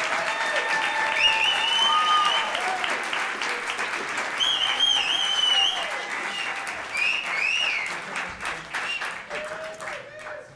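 Audience applauding and cheering, with voices calling out over the clapping. The applause fades away toward the end.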